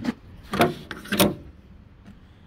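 Two crunching footsteps on gravel, about half a second apart, after a short click at the start.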